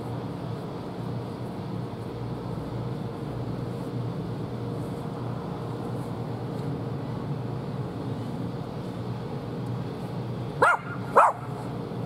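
A steady low hum, then a dog barks twice close together near the end.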